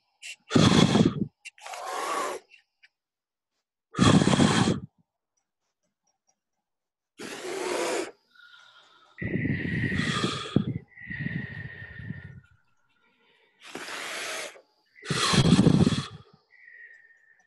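Several people blowing puffs of breath through pursed lips straight into their microphones, heard as a series of separate rushing puffs, one every second or two, with two longer overlapping ones near the middle carrying a faint steady high tone.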